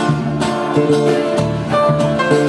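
Live band playing an instrumental passage between sung lines: strummed acoustic guitar over electric bass and keyboard.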